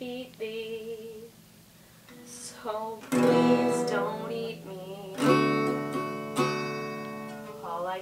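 Acoustic guitar strummed in chords, with loud strokes about three, five and six seconds in, each left ringing. The guitar is out of tune.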